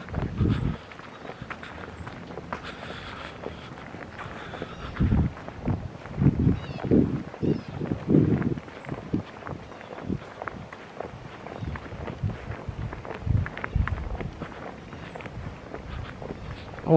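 Footsteps and the rustle of a puffer jacket against a handheld camera as a person walks, heard as irregular dull thumps and scuffs.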